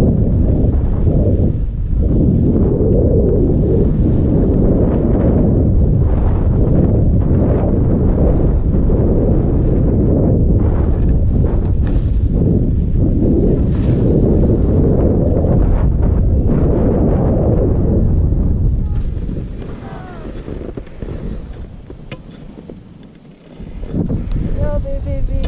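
Wind buffeting a GoPro Hero5 Black's microphone, mixed with skis sliding through snow on a downhill run. The loud, steady rush dies away from about nineteen seconds in as the skier slows to a stop.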